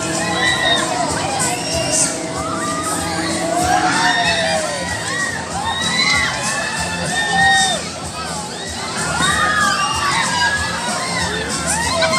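Riders on a spinning fairground arm ride screaming and shouting, many voices at once in long rising and falling cries.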